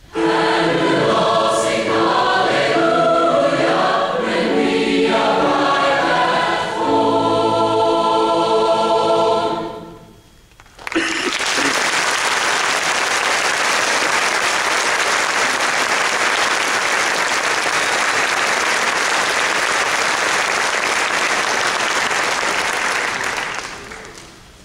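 A large massed choir singing the closing bars of a piece, holding a final chord that cuts off about ten seconds in. After a brief pause the audience applauds steadily, fading out near the end.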